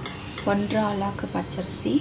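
A spoon clinking and scraping against the side of a metal pot while stirring thick idli batter, with a few short sharp clinks.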